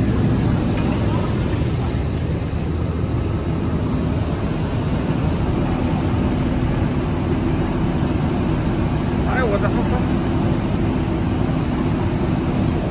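ZXJ-919-A fiber stuffing machine running steadily, its blower moving fiber through the mixing chamber and hoses with a loud constant drone and hum.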